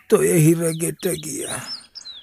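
Birds chirping behind a person's voice. A short high chirp falls in pitch near the end.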